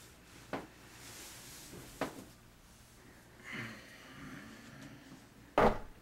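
Someone moving about in a small bathroom: a few light knocks and clothing rustle, then a loud thump near the end as he sits down on the toilet.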